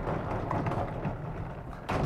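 Vertical sliding blackboard panels rumbling as they are moved up and down in their frame, with a sharp thud near the end as a panel reaches its stop.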